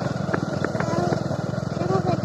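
Motorcycle engine running steadily at cruising speed, heard from the pillion seat while riding.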